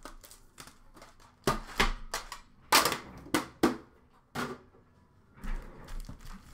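A metal hockey card tin being handled, opened and emptied, with its packs set down on a glass shelf. It makes a string of about nine sharp clicks and knocks, the loudest about three seconds in.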